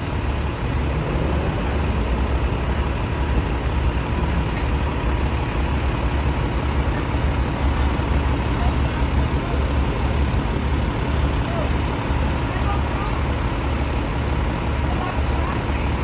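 Steady low rumble of idling heavy vehicles mixed with street noise, with people talking indistinctly in the background.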